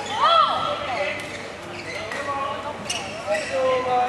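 Indoor badminton hall during play: short squeals of court shoes on the floor and voices, with a few sharp knocks of racket on shuttlecock, one near the end.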